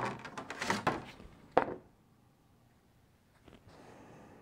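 Handling noises on a tabletop: a run of light clicks and knocks, then a single sharper thump about one and a half seconds in.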